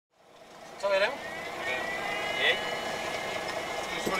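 Vehicle engine idling steadily, heard from inside the cab, fading in as the recording starts, with two short bursts of a voice.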